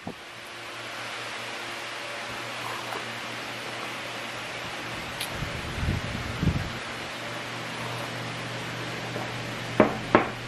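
Steady mechanical hum in a small room, with a few soft gulps about six seconds in as a drink is swallowed from a plastic cup.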